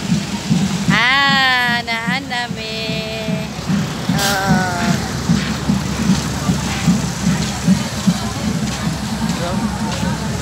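Street parade: a steady low beat of music pulses about two to three times a second under crowd and wind noise. A voice rises in a long loud call about a second in, and a shorter falling call follows around four seconds in.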